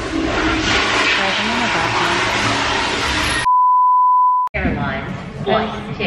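A single steady high beep lasting about a second, a censor bleep that mutes all other sound, coming a little past the middle and ending with a sharp click. Before it, a busy background of voices and noise.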